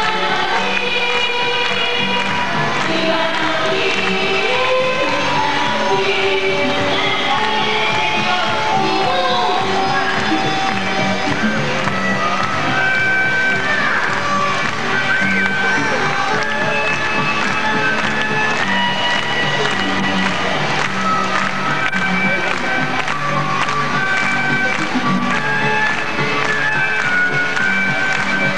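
Music from a song playing, a melody of held notes over a steady bass line.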